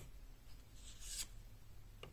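Faint rustle of tarot cards being handled and slid over a table, with a soft swish about a second in, over a low steady hum.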